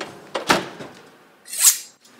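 A wall oven door swung shut with one thunk about half a second in. Near the end, a brief high hiss swells and fades.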